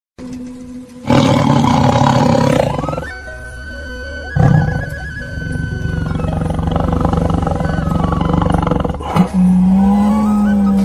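Tiger roars, a loud one starting about a second in and another just before the middle, mixed with music that holds steady tones.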